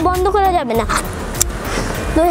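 A child's high voice speaking briefly, then rustling and handling noise with one sharp click about halfway through, as he moves about in a car.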